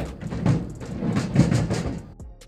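Metal rattling and clanking at a utility trailer's hitch as it is handled by hand, over a steady rumble, with many quick clicks throughout; it cuts off abruptly at the end.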